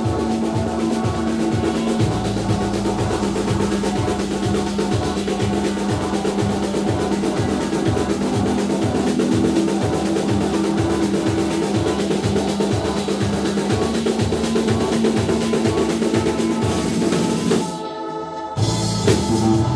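Live instrumental band music: a drum kit keeping a steady pulse of about two beats a second under electric bass and long held tones. The music cuts out abruptly right at the end.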